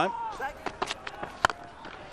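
A cricket bat striking the ball once, a single sharp crack about one and a half seconds in: a well-struck shot.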